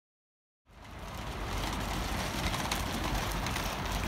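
Outdoor ambience beside a road: a steady rumble and hiss of traffic and wind, with a few faint clicks. It starts suddenly about two-thirds of a second in, after silence.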